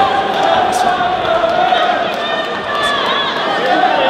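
Boxing crowd of many voices shouting and calling out over one another, with no single voice standing clear.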